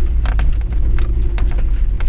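Turbocharged Subaru Forester's flat-four engine running under way, heard inside the cabin as a steady low drone, with scattered sharp clicks and knocks over it.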